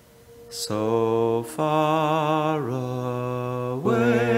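Wordless singing or humming: after a short hiss, a voice holds long notes with vibrato, each about a second long, the pitch dipping and then rising toward the end.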